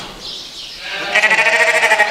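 A ewe lamb bleating: one long, wavering bleat that starts about a second in.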